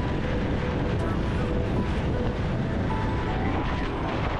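Can-Am Ryker Rally 900 three-wheeler cruising at highway speed: steady wind rush on the open-air camera microphone over its three-cylinder engine running and the road noise.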